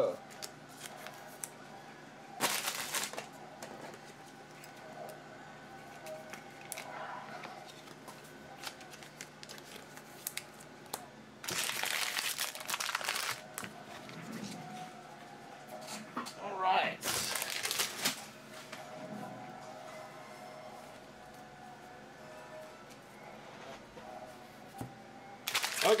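Foil trading-card pack wrappers crinkling and tearing in a few separate bursts of a second or two each, the longest about halfway through, with quieter handling between.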